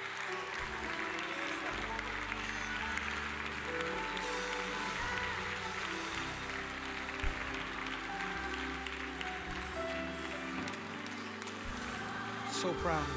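Church keyboard playing soft, sustained chords that change every second or two, with steady applause and crowd noise from the congregation. There is one brief knock about seven seconds in.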